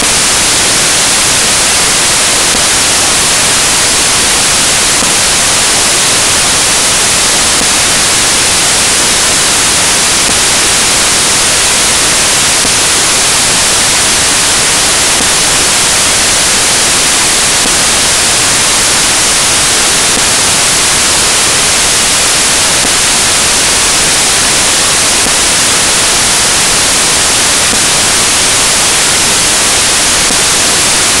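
Loud, steady white-noise hiss that never changes, with no other sound in it.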